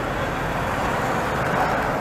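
Steady low motor-vehicle rumble with no distinct events.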